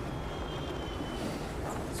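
Steady low background rumble, with a faint thin high tone for about the first second.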